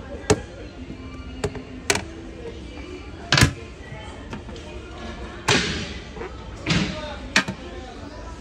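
Hard plastic toilet seats and lids being handled and dropped shut: a series of about seven sharp clacks and knocks, the loudest about halfway through, two of them longer and scraping.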